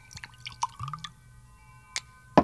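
Glassware clinking with a few small knocks, and a short splash of liquid poured into a glass about halfway through, rising slightly in pitch.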